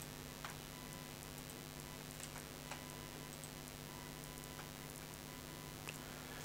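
A handful of faint computer mouse clicks, scattered a second or more apart, over a steady low hum.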